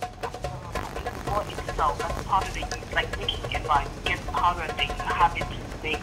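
Speech only: a caller's voice talking over the phone, thin and fairly quiet.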